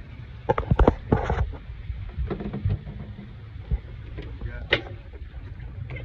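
A few sharp knocks and clatters about half a second to a second and a half in, and another just before the end, over a steady low rumble.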